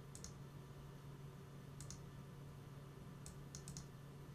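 Faint clicks of a computer mouse, coming in close pairs like double-clicks: a pair near the start, another about two seconds in, and a quick run of about four near the end, over a steady low hum.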